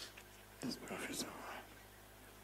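A faint, soft voice speaking briefly, almost whispered, for about a second in the middle.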